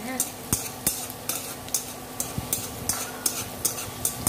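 Julienned ginger sizzling in hot oil in a stainless steel pan while metal tongs stir it, clacking and scraping against the pan about twice a second. The ginger is being fried until fragrant.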